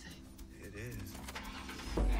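Car engine running low, heard inside the cabin under faint music and a brief murmur of a voice; the engine gets louder right at the end.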